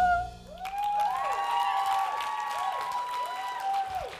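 A woman's held sung note with vibrato ends in the first half-second, then the audience applauds, with several rising-and-falling whooping cheers over the clapping.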